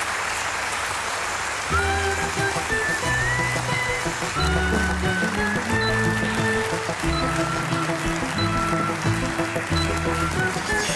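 Audience applause, joined after a couple of seconds by closing theme music with a bass line and a melody, the clapping going on underneath.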